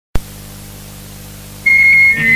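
The opening of a raw black metal recording: a click as the sound starts, then a quiet low hum with hiss. About one and a half seconds in, a loud, steady high-pitched tone begins.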